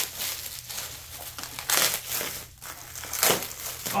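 Thin plastic bag crinkling as it is pulled off a wrapped device, in irregular bursts, the loudest a little under two seconds in and again past three seconds.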